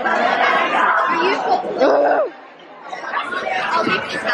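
Chatter of many people talking over each other at once, with one voice standing out near the middle; the chatter drops quieter just past halfway.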